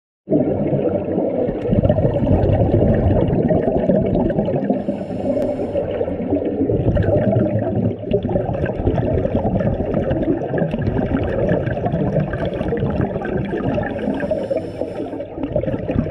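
Muffled underwater rushing and bubbling from scuba divers' exhaled regulator bubbles, heard through an underwater camera housing. The noise is loud, steady and dull, with little treble.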